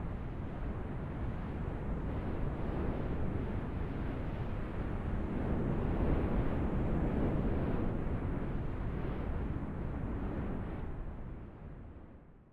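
Wind blowing, a steady rushing noise that is heaviest in the low end. It swells gradually toward the middle and fades away near the end.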